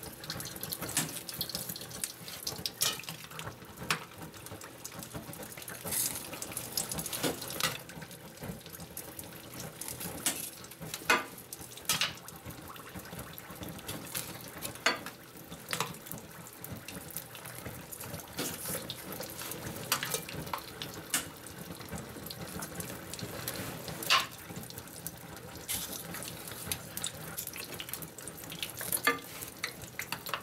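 Quench oil hissing and crackling with flames on its surface as red-hot tool-steel tappets are plunged in from the heat-treating furnace. A steady rushing hiss is broken by sharp clicks every second or few, over a faint steady hum.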